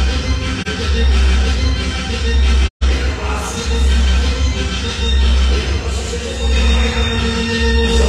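Loud dance music with heavy bass played over a large mobile sound system (sonido) in a crowded hall. The audio cuts out completely for an instant a little under three seconds in.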